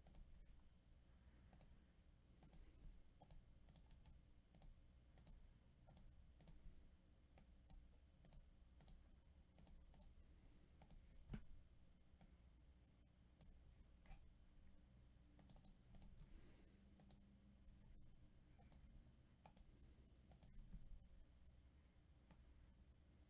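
Faint, scattered clicks of a computer mouse and keyboard being worked, over a low steady hum.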